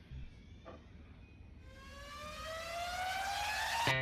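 A synthesized rising tone in the background music sweeps upward for about two seconds. It cuts off abruptly as a new plucked-guitar track begins.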